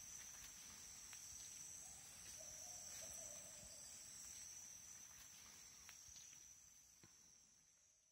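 Faint, steady, high-pitched chorus of insects, fading out near the end.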